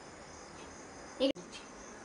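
Faint, steady, high-pitched insect trilling in the background. A short voice sound comes just after a second in and is cut off abruptly.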